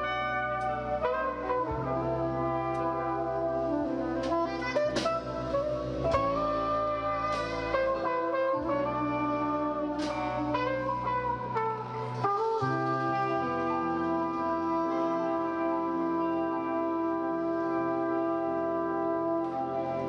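Live jazz fusion band with a horn section of trumpet, soprano saxophone and trombone playing over keyboards, bass and drums, with cymbal strokes in the first half. From a little past halfway the band settles into one long held closing chord.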